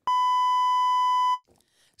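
A single steady electronic censor bleep, one high pure tone held for about a second and a half that stops abruptly, dropped over a word in the middle of a sentence.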